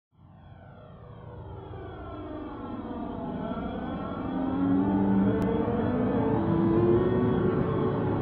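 Synthesized spacecraft-like rumble fading in as the intro of an electronic song, with several sweeping tones falling in pitch over the first few seconds. About halfway, sustained synth notes enter and the sound reaches full level.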